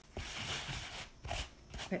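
Sanding block rubbing over dried spackle through a plastic stencil: scratchy sanding strokes, one long stroke, then a brief pause about a second in and a shorter stroke.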